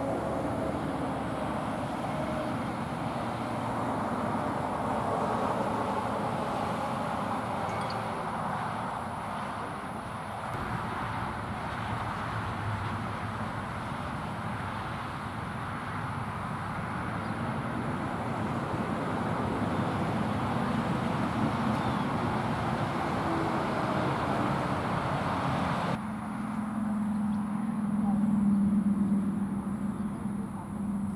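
Road traffic: pickup trucks driving past, a steady wash of tyre and engine noise that swells and fades slowly. In the last few seconds a low engine hum grows louder as another truck comes along.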